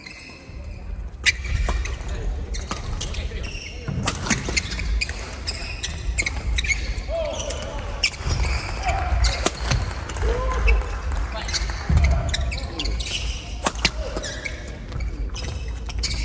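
Badminton doubles rally in a large hall: repeated sharp cracks of rackets hitting the shuttlecock, and players' feet thudding on the wooden court floor, with some voices.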